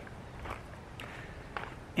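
Faint footsteps on a sandy dirt trail at a walking pace, a soft step about every half second.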